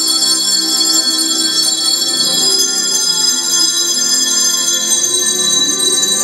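A handbell choir ringing a tune, many bell tones sustaining and overlapping.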